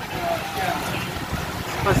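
Low steady rumble of a roll-on/roll-off ferry's engines as the ship approaches slowly, with faint voices underneath.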